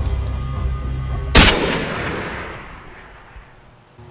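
A single loud pistol shot about a second and a half in, its echo dying away over the next second and a half. Dark underscore music with a low drone plays up to the shot and then drops away.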